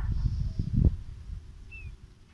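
A ballpoint pen drawing a curve on paper, with low bumps and rubbing from the hand on the sheet and desk, strongest in the first second. A brief, faint high chirp comes near the end.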